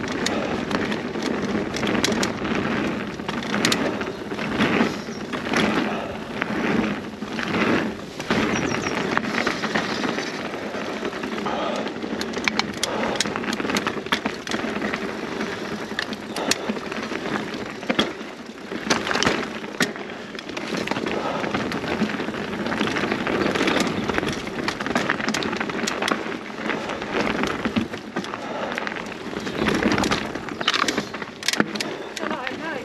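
Mountain bike ridden fast down a dirt singletrack, heard from a camera mounted on the bike: a steady rush of tyres on dirt with frequent sharp clatters and knocks from the bike's chain and parts as it runs over stones and roots.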